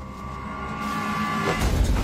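Film fight-scene sound effect for a martial-arts power strike. A held, ringing tone swells, then about one and a half seconds in a loud rushing whoosh with a deep rumble surges in.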